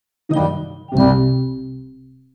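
Two bell-like chime strikes, the first about a third of a second in and the second, louder, about a second in, each ringing out and fading.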